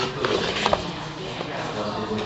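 Paper pages of a bound handbook being turned by hand: a short rustle and flick of paper about two-thirds of a second in, with voices going on behind.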